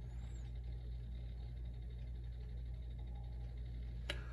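A steady low hum with faint background hiss, unchanging throughout.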